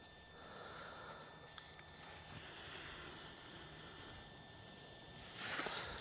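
Faint outdoor ambience: a low, steady hiss with a tiny click, and a short rise of noise near the end.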